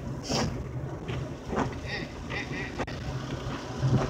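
Car cabin noise while driving in heavy rain: a steady low engine and road hum under a hiss of wet tyres and rain, with a faint swish about every second and a quarter.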